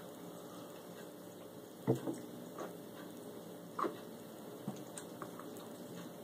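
A man sipping soda from a glass and swallowing: a few short soft sounds, the loudest about two seconds in and another near four seconds, over faint room hiss.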